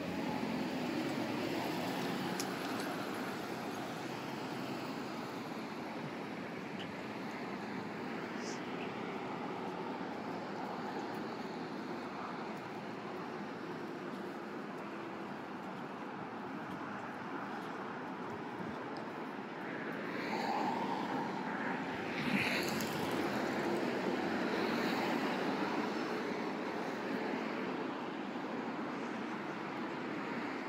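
Steady city street traffic: cars and buses passing on a busy road, picked up by a phone's built-in microphone. The traffic grows louder about twenty seconds in, with a short sharper sound a couple of seconds later, then eases slightly near the end.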